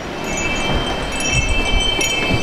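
Chime on a shop door ringing as the door is pulled open: several high bell tones sound together about a quarter second in and ring on, over a low rumble of outside noise.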